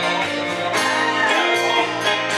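Live band playing an instrumental passage, with strummed acoustic and electric guitars prominent.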